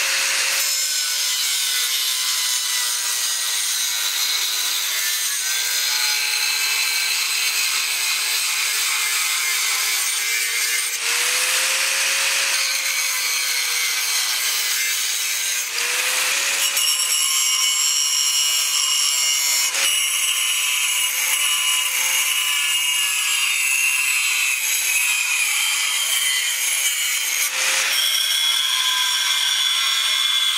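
Angle grinder with an abrasive cut-off disc cutting through aluminium plate: a continuous harsh grinding of the disc in the metal over the motor's whine, whose pitch sags and recovers as the cut loads it. A few louder grating stretches come as the disc bites harder, about 11, 16 and 28 seconds in.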